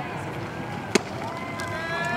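One sharp pop about a second in: a baseball pitch hitting the catcher's leather mitt. A voice calls out with a long, held shout right after.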